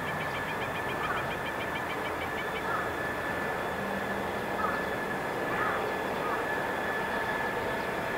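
Steady airfield background noise: a constant rushing with a steady high whine. Short chirps recur every second or so, and a fast run of chirps fills about the first two and a half seconds.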